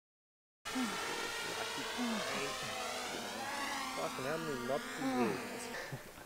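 A man's wordless groans and moans, several of them, sliding and wavering in pitch, from a runner spent after a hard 200 m rep, over steady background noise. The sound cuts in suddenly about half a second in.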